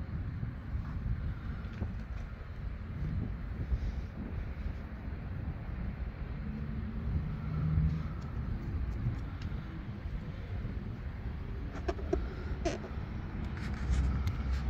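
Wind buffeting a phone microphone outdoors: a low, uneven rumble, with a few light handling clicks near the end.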